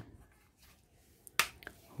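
Hard plastic parts of a toy gun clicking as they are fitted together: one sharp click about a second and a half in, then two fainter clicks.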